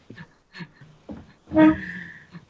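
Men laughing over a video call: faint chuckles at first, then a louder, pitched burst about one and a half seconds in that holds a high note.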